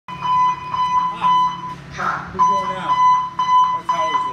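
Fire station alerting tone: a repeating high electronic beep pulsing several times a second, with a short break about two seconds in, over a low hum that stops about three and a half seconds in. Voices are heard between the beeps.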